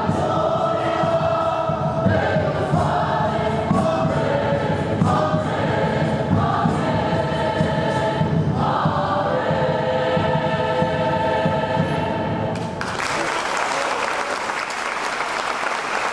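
Choir singing a sustained vocal piece for about thirteen seconds, then the singing gives way to applause.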